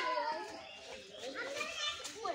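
Boys' voices talking and calling, fairly faint.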